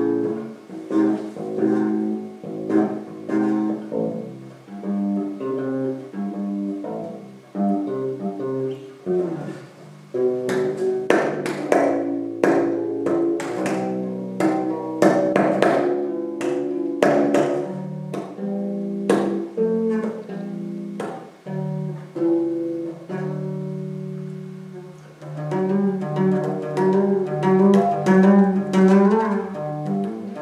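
Electric bass guitar played solo through a small amplifier: a steady run of plucked notes that turns, about ten seconds in, into a busier stretch of sharp slapped and popped notes, then returns to fingered lines.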